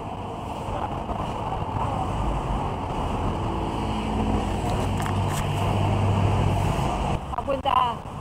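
Busy street-front ambience: a steady low rumble that grows louder through the middle and drops away about seven seconds in, with a voice briefly near the end.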